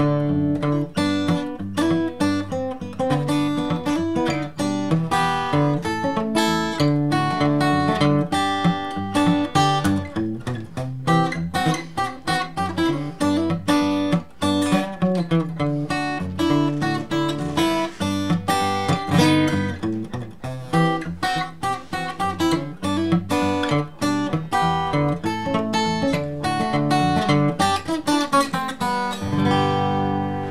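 Handmade dreadnought acoustic guitar with a solid spruce top, played unplugged with a flatpick: quick picked notes mixed with strums, ending on a chord left to ring out near the end.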